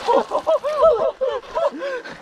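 A string of short, quick wordless cries, about five or six a second, from a person who has just plunged into cold lake water.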